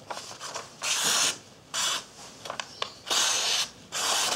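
Sharpened knife blade slicing through a sheet of paper in a paper-cutting sharpness test: three short hissing slices, with light paper rustles between them.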